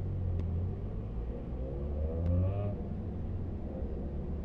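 Bus engine running with a steady low rumble as the bus drives in traffic, with a rising whine partway through as it picks up speed. Two faint clicks.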